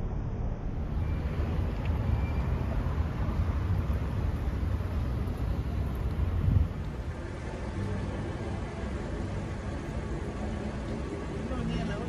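Steady low rumble of street traffic and idling vehicle engines. It drops a little in level about seven seconds in.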